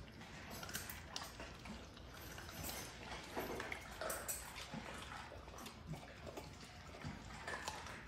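Faint, irregular wet clicking and smacking of puppies chewing and licking raw food.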